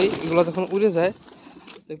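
A flock of feral pigeons flushed all at once, a loud burst of wing flapping that fades after about a second. A man's voice sounds over it.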